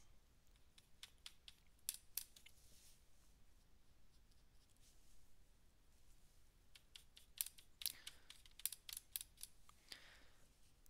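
Near silence broken by faint, scattered clicks and light scrapes from a paintbrush being worked against a tin of watercolour blocks. The clicks come thicker near the end.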